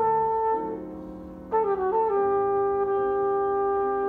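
Flugelhorn and piano playing a slow jazz piece: the flugelhorn holds a note, breaks off for about a second while a piano chord rings on, then comes back in about a second and a half in, sliding down into a long held note over sustained piano chords.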